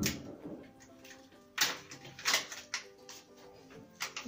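Soft background music with a few short crinkles of a plastic zip-lock bag being handled, the loudest about one and a half and two and a quarter seconds in.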